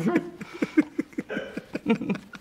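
A man laughing heartily: a quick run of short, voiced 'ha' bursts, several a second.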